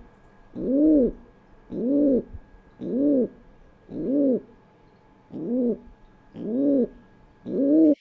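Recorded rock pigeon advertising coo: a series of short untrilled coos, each rising then falling in pitch like a person going "woo", about one a second. It is the coo a male gives from a nest site he has found, to call a female over.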